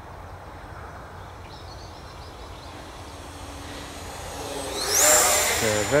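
Electric ducted fan of an Arrows Hobby Marlin 64 mm RC jet in flight: a rushing sound that swells toward the end, with a high whine that rises sharply in pitch about four and a half seconds in and then holds steady.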